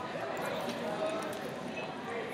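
Computer keyboard typing, a quick run of keystrokes, over a murmur of background voices.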